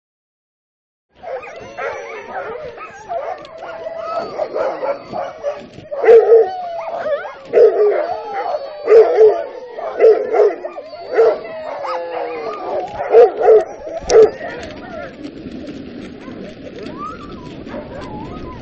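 A team of sled dogs barking and yelping together, the calls overlapping. The barking starts about a second in and is loudest in the middle, with sharp repeated barks. It stops near the end, leaving a steady, quieter noise.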